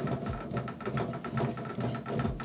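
Baitcasting reel being cranked by hand. Its gears and level-wind whir with a rapid run of fine clicks as line winds onto the spool.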